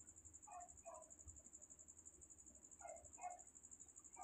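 Near silence with a faint, steady, high-pitched insect trill, typical of crickets, running throughout. Two faint double chirps come about half a second in and again about three seconds in.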